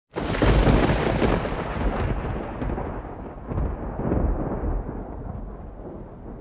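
Thunder sound effect: a sudden loud clap out of silence, then a rolling rumble that swells again about three and a half seconds in and slowly fades.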